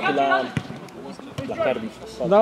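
Men shouting on a football pitch, with two sharp thuds of the football, about a second apart.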